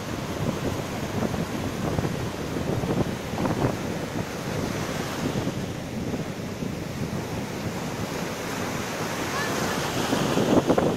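Ocean surf breaking and foamy water washing through the shallows, a steady rush with wind on the microphone.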